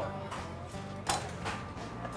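Soft background music of steady held tones, with a few faint clinks of kitchen utensils, knife and pan, in the middle.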